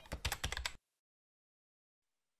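Computer-keyboard typing sound effect: a quick run of key clicks that stops under a second in.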